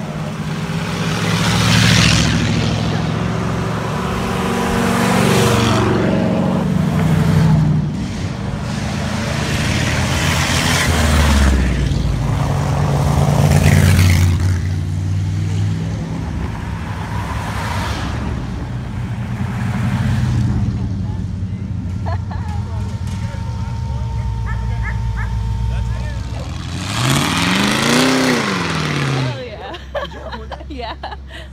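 Vintage cars and trucks driving past one after another, each engine swelling loud as it goes by. Near the end one car's engine revs up and eases off.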